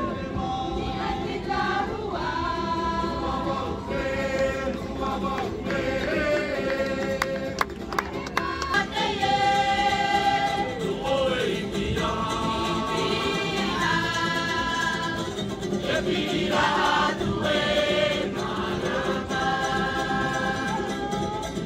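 Polynesian mixed choir singing in harmony, in long held chords, accompanied by ukuleles and guitars. A few sharp clicks come about seven to eight seconds in.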